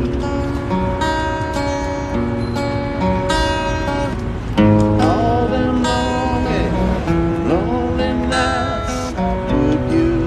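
Acoustic guitar being strummed, a run of chords ringing on in a steady rhythm.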